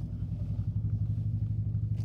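Car engine running at low speed with a steady low drone, heard from inside the cabin as the vehicle rolls slowly along.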